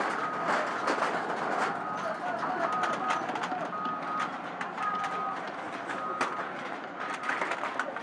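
Reversing alarm of a Caterpillar 953D track loader, sounding a high-pitched beep repeated many times at uneven intervals, over background voices and scattered knocks.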